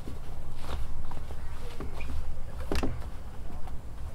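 Hands stirring and working ram, a powdery rice-husk ground bait, around a plastic bowl: scattered scratchy rustles and light knocks, one a little louder about three seconds in, over a low steady rumble.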